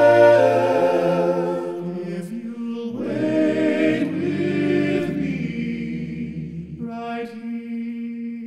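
A cappella choir singing long held chords in close harmony, moving to a new chord every couple of seconds and growing softer toward the end.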